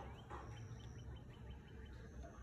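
Faint bird song: a short rising note, then a quick run of about seven short repeated high notes, over a steady low rumble.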